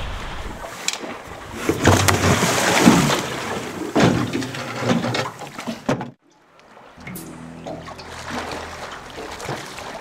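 Water splashing and sloshing as a snorkelling spearfisherman moves at the surface. The splashing cuts off suddenly about six seconds in, and background music begins faintly under quieter water sounds.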